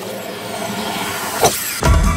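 A long whoosh of a golf swing, then a sharp crack of a driver striking the ball about one and a half seconds in. Music with a heavy beat comes in just before the end.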